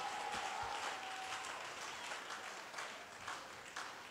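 Congregation applauding, the clapping slowly dying away.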